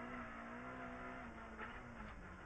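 Opel Adam R2 rally car's 1.6-litre four-cylinder engine running at speed, heard faintly from inside the cabin, its note holding a steady pitch.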